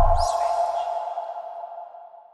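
End of a TV channel's logo sting: a ringing, ping-like tone left by a deep bass hit, fading steadily away. The bass dies out within the first moment, a faint brief sweep passes high up, and the ringing is nearly gone by the end.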